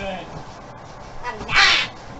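One short, loud, raspy yell about one and a half seconds in, over quiet background voices.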